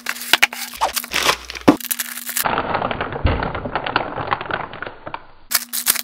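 Foam packing blocks and a cardboard box being handled as an inverter is pulled free: a run of sharp cracks, creaks and scrapes, with denser crackling in the middle.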